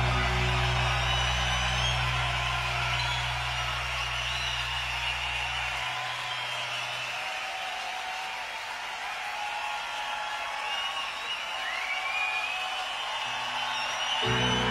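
A rock band's held closing chord with deep bass dies away about six to seven seconds in. It leaves a large crowd cheering and whistling. Right at the end a new sustained keyboard chord starts.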